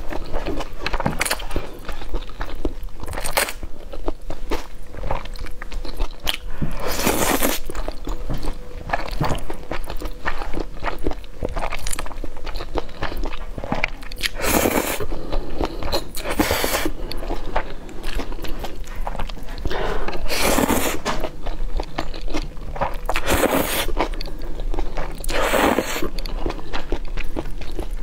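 Close-miked eating of saucy noodles: chewing and wet mouth clicks throughout, broken every few seconds by a longer slurp as a chopstick-load of noodles is drawn into the mouth.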